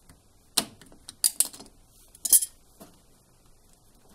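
Sharp metallic clicks and clinks of pliers and a metal hose clip being worked off a washing machine's drain hose at the pump: one click about half a second in, a quick cluster a little after one second, and the loudest just past two seconds.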